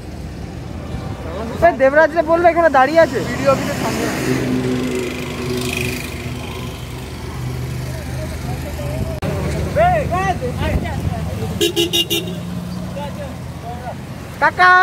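Roadside traffic: motor vehicle engines running steadily, with a short horn honk near the end, under men's voices.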